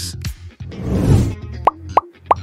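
Quiz-video transition sound effects over background music: a noisy whoosh swells and fades about a second in, then two short rising pops come near the end as the answer options appear.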